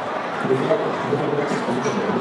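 Many people talking at once, a steady murmur of crowd chatter.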